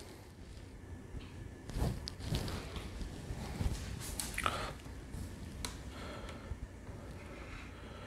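Quiet handling noise: a few soft knocks and rustles as a plastic snake tub and its water dish are moved about, with a short breath about halfway through.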